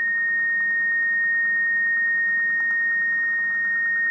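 A steady high-pitched tone held at one pitch, coming through a Motorola Talkabout FRS walkie-talkie that is receiving a wireless intercom's transmission. A faint thumping sits underneath it: the intercom's digital squelch code, 745, being sent in binary.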